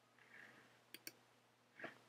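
Near silence, broken by a few faint clicks: two close together about a second in and one more near the end.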